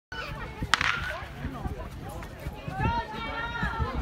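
People's voices calling out across a sports field, with one sharp crack less than a second in.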